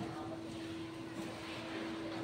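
A steady machine drone: one constant, unchanging hum over a background of noise.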